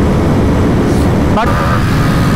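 Wind rushing and buffeting over the rider's microphone on a sport motorcycle at about 130 km/h, with the engine running hard underneath as the bike keeps accelerating.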